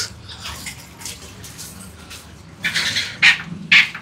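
Domestic animals calling: several short, harsh calls in the second half, over a low steady background hum.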